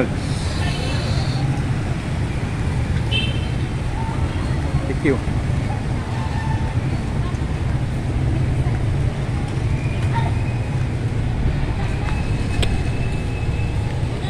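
Street traffic noise: motor tricycles and cars running, heard as a steady low rumble, with a few short high tones over it.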